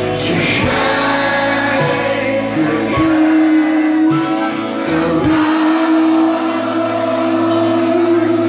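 A live band playing a song with electric guitars and singing, recorded from among the audience. A long note is held from about three seconds in.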